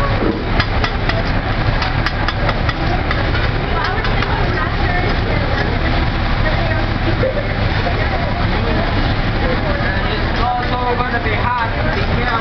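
Metal spatulas clacking and scraping on a hot steel teppanyaki griddle as a chef chops and turns fried rice, with many quick taps and a steady sizzle underneath.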